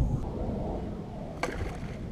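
Low rumble of water and wind around a kayak on open water, with one sharp knock about one and a half seconds in.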